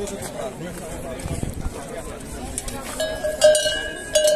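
Large hanging metal cowbells (chocalhos) struck by hand about three seconds in, ringing on with a steady tone, with a louder clang about half a second after the first.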